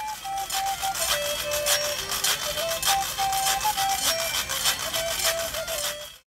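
A carved carrot flute playing a simple melody of held notes that step between a few pitches, over a quick, even clicking rhythm.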